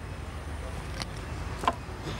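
Steady low outdoor rumble with a light click about a second in and a sharper knock near the end, as a person climbs onto a wooden plank laid across two stepladders.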